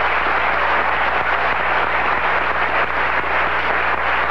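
An audience applauding steadily: a dense, even clatter of many hands clapping.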